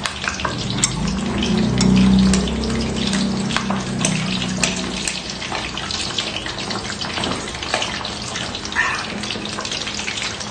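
Steady frying noise, hot oil hissing and crackling with scattered sharp pops throughout. A low hum swells underneath during the first half and then fades.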